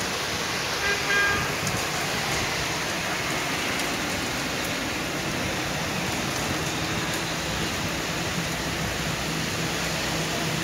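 Heavy monsoon rain falling steadily as a dense hiss, mixed with traffic on a wet road. A short higher-pitched tone sounds about a second in, and a vehicle engine's low hum comes in near the end.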